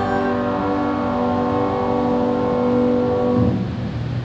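Final chord of a hymn held steadily, with several notes sounding together, then ending about three and a half seconds in.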